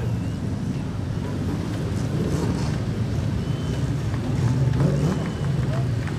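A production sedan race car's engine running at low speed on a dirt track, heard from a distance over a steady rumble of outdoor background noise.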